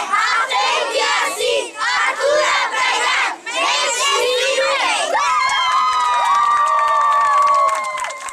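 A group of children shouting and cheering together, many high voices overlapping, turning about five seconds in into one long, drawn-out shared cheer.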